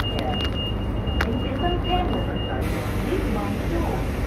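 Steady low rumble inside a light rail car standing at a platform with its doors open. A thin, steady high tone stops about two and a half seconds in, as a hiss comes in. Faint voices sound now and then.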